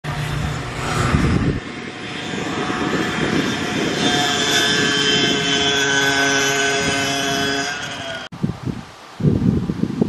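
A steady engine drone with several held tones that cuts off abruptly about eight seconds in, followed by wind gusting on the microphone.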